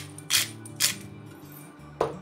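A hand-twisted pepper mill grinding black pepper into a bowl: three short grinding bursts within the first second, then it stops.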